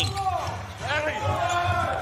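Voices calling out across a basketball court during live play, with no crowd noise.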